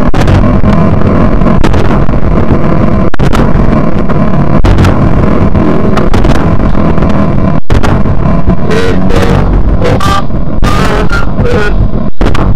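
Dense, loud synthesized industrial noise music: a thick low rumble and grinding texture cut by sharp clicks every second or two. There is a brief gap about two-thirds of the way through, and warbling electronic tones come in over the last third.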